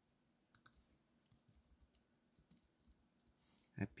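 Near silence: room tone with a few faint, scattered clicks, two close together about half a second in. A voice begins right at the end.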